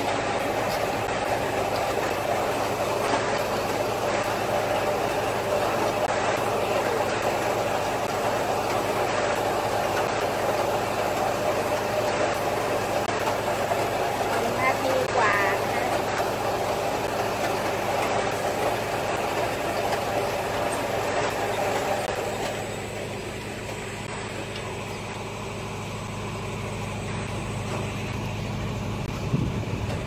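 Machinery running steadily with a low hum, dropping to a quieter, steadier hum about 22 seconds in.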